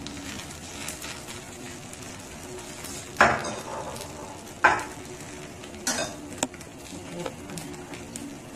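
Jianbing crepe frying on an electric baking pan, a faint steady sizzle, with two sharp clatters of kitchenware a little after three seconds and near five seconds, and lighter clicks around six seconds.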